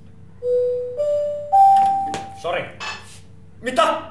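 Electronic chime playing three rising notes about half a second apart, followed by a jumble of short noisy sounds, some voice-like.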